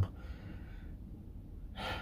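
A man's breathing in a pause in his talk: a soft breath out early on, then a quick breath in near the end.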